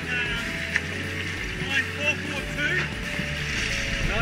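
Indistinct talking mixed with music-like tones, over a low rumble.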